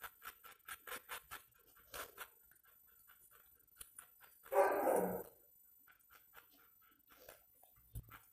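Small wet clicks and smacks of a dog's mouth as it licks, then a dog barks once, about halfway through.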